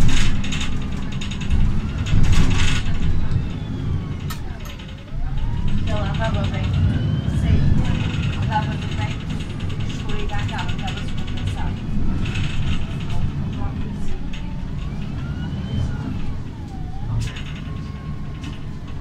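Inside a MAN NL313 CNG city bus on the move: the low rumble of its natural-gas engine and the road, with interior fittings rattling and clicking. Whining tones dip down and rise back up in pitch a few times.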